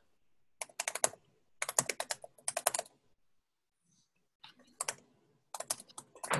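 Typing on a computer keyboard, several quick runs of keystrokes with a pause of over a second near the middle.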